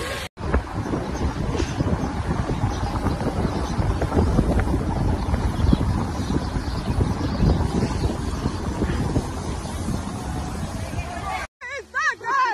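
A moving car heard from inside through a phone microphone: steady rumbling road and wind noise. It starts abruptly just after the start and cuts off abruptly near the end.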